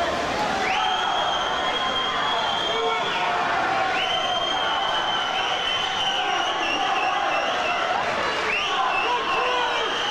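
Spectators cheering and shouting during a swim race in an indoor pool hall. Three long, shrill, high-pitched held notes rise above the crowd, each lasting two to three seconds.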